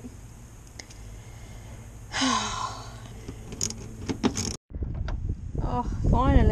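Small clicks and clinks of hand tools and metal fasteners being handled at a car's front wheel arch while removing the arch trim bolts, with a short vocal sound about two seconds in. After an abrupt cut near the end, louder wind rumble on the microphone.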